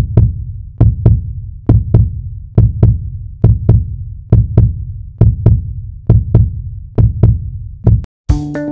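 Heartbeat sound effect: deep double thumps (lub-dub) repeating evenly a little faster than once a second, each with a sharp click at its start.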